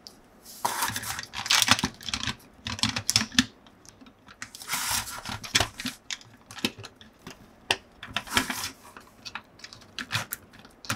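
Hard plastic clicking and scraping as an action figure is handled and pressed into the seat of a plastic toy motorcycle: irregular small clicks and short rustling scrapes, with pauses between.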